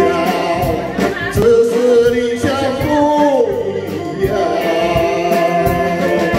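A man singing a ballad into a microphone, backed by a live band whose drum kit keeps a steady beat under electric guitar, saxophone and keyboard.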